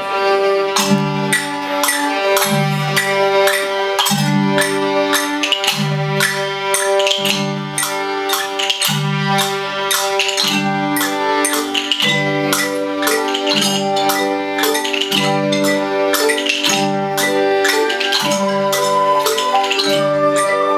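A children's school ensemble playing a Christmas song on wooden xylophones, rhythm sticks and violins: struck mallet and stick notes over held tones, with a low bass note repeating on a steady beat.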